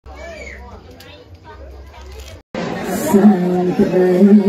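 Quiet speech over a low hum, then after a sudden cut about two and a half seconds in, a woman's voice through a microphone begins a Khmer Buddhist chant. The chant is louder and holds long, steady notes.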